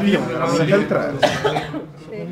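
Men's voices talking, with a short noisy sound about a second in.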